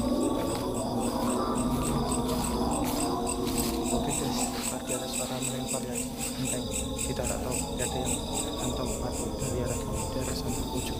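Crickets chirping at night: a steady, high-pitched pulsing, about four chirps a second.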